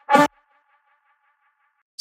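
One short pitched hit of a resampled lead-synth sample, made from a recorded voice, triggered from a Drum Rack cell of Simpler one-shots and cut off after about a quarter second. A faint, fluttering tone lingers until near the end.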